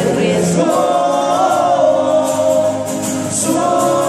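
Live acoustic pop: several male voices singing in harmony over strummed acoustic guitars, amplified through microphones and PA speakers, with a long held note about a second in.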